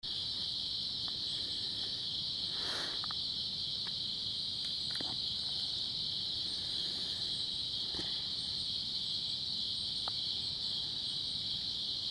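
Nocturnal insect chorus: a steady, unbroken high-pitched drone, with faint higher chirps repeating over it and a few soft clicks.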